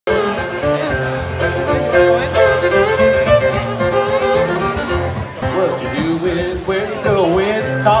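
Live bluegrass band amplified through a PA, playing the instrumental opening of a song with fiddle and banjo over bass. A lead voice starts singing near the end.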